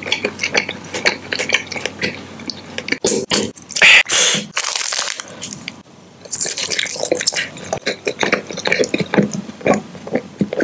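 Close-miked mouth sounds of biting and chewing a light puffed snack: rapid crisp crunches and wet clicks of lips and tongue. The loudest crunches come about four seconds in and again a little after six seconds.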